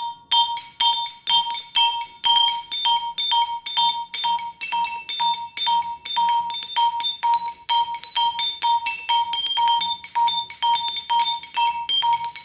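Percussion quartet playing mallet percussion: a repeated high note struck about three times a second under shifting, ringing bell-like higher notes.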